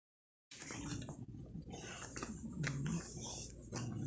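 English bulldog grunting and snorting: about five short, low grunts with a few light clicks between them, the noisy breathing typical of the breed's short muzzle.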